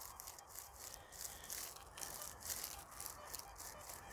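Faint, dry crackling rustle of cut straw stubble as a metal detector's coil is swept low over it, in a run of short irregular scratches.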